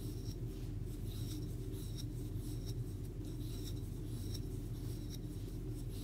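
Wooden crochet hook pulling yarn through loops while chaining, giving soft scratchy ticks about one to two a second over a steady low hum.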